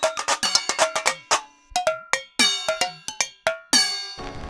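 Animated intro jingle of bright, ringing percussive hits like a cowbell or wood block. They come quickly at first, then slow into separate strikes with short gaps between them, the last one near the end.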